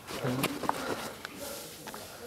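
A brief voice sound about a quarter of a second in, followed by a few faint, scattered clicks.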